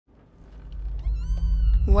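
A piano squeaking: one drawn-out high squeak about a second in, rising slightly in pitch and then holding, over a low rumble that swells up.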